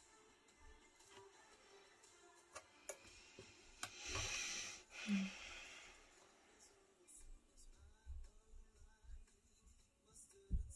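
Faint background music, with a brief soft hiss about four seconds in and a few faint low bumps in the second half.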